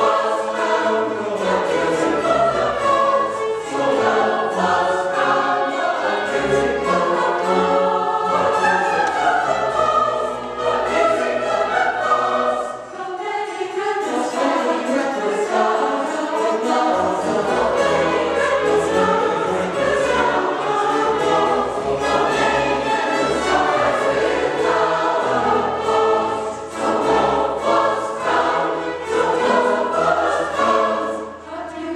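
Mixed choir singing with a small string orchestra accompanying, continuous classical choral music with a short breath between phrases about halfway through.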